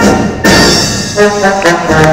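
A brass-led concert band playing a Mexican medley. A held chord dies away, a sudden loud full-band hit comes about half a second in, and then short, separate brass notes start the next passage.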